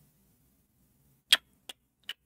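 Near silence, then a sharp click about a second and a third in and a fainter click a third of a second later.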